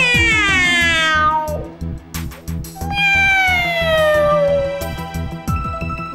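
A cat meowing twice, two long meows falling in pitch, over background music with a steady low beat.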